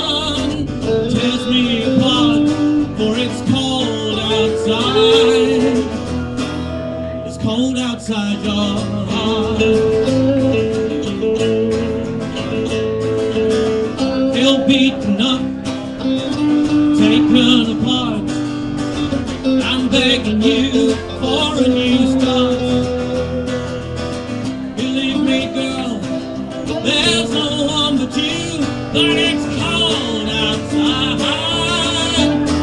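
Live band music: strummed acoustic guitar over electric guitar, bass and drums, playing a song without pause.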